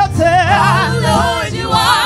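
Gospel praise-and-worship singing: several voices singing together through microphones, with vibrato on held notes, over steady low sustained accompaniment notes.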